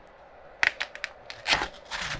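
Clear plastic bag crinkling and rustling as it is pulled off a small ASIC crypto miner, in several sharp crackles beginning about half a second in.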